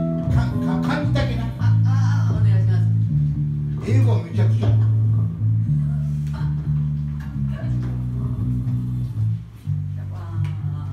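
Band rehearsal music led by an electric bass guitar playing a line of held low notes that change every half second to a second, with a voice heard over it at times.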